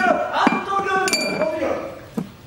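A man speaking, with a short ringing clink about a second in.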